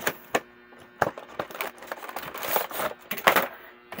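Cardboard toy box being opened: the flap snaps and clicks open, then the clear plastic tray scrapes and rustles as it slides out of the box, with a few sharp snaps near the end.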